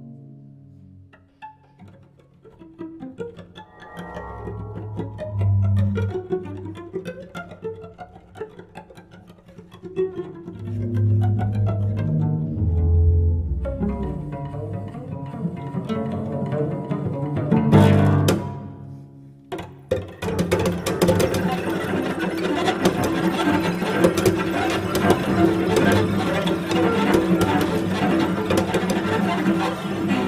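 Contemporary solo cello with live electronics: sparse plucked notes and deep low tones with electronic sounds underneath, a sharp loud strike about eighteen seconds in, then a dense, loud, crackling texture for the last third.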